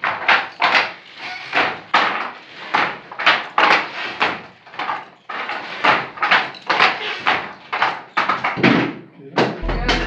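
Speech: a voice talking throughout, not in English and left untranscribed. Background music with steady held notes comes in near the end.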